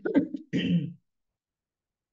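A person clearing their throat in two short bursts within the first second, heard over a video call.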